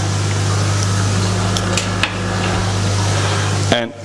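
Steady low hum of koi-pond machinery over the rush of aerated, bubbling pond water, with a few light clicks about halfway through as a small glass phosphate test vial and reagent scoop are handled.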